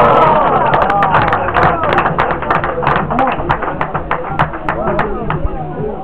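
Music with voices at the start, then a run of sharp, rhythmic handclaps at about three to four a second that stops shortly before the end.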